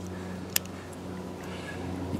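A single sharp click about half a second in, as a knife is picked up and opened, over a faint steady low hum.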